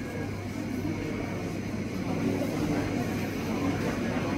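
Indistinct murmur of a crowd of people talking over a steady low hum, getting a little louder about two seconds in.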